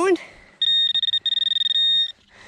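Handheld metal-detecting pinpointer's buzzer sounding a steady high electronic tone, briefly broken once or twice, as its tip is held on a target in the dug hole: a small piece of lead.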